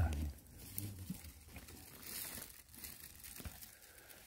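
Faint rustling and crackling of dry pine needles and forest litter as a gloved hand works a pine mushroom loose and pulls it out of the soil.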